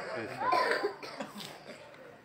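A pause in a man's amplified speech: a faint, short cough-like vocal sound about half a second in, then the sound fades away toward quiet.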